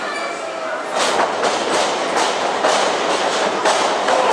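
Live pro-wrestling match noise in a large hall: a rapid, uneven run of sharp smacks, about three a second from about a second in, with shouting voices underneath.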